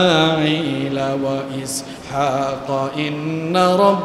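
A man's voice chanting in the drawn-out, melodic style of a Bengali waz sermon, holding long notes that waver in pitch, with short breaks between phrases.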